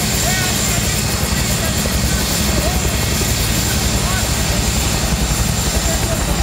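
Bell UH-1 Huey helicopter running close by, its rotor giving a fast, steady chop with a thin high whine over it, loud and unbroken.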